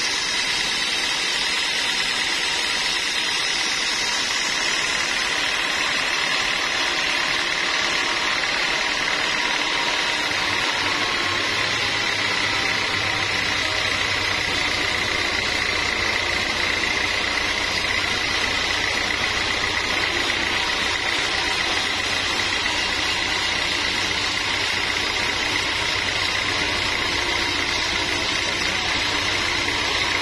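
Band sawmill machinery running steadily, with a constant high whine over a noisy rush. A deeper low hum joins about a third of the way in and holds.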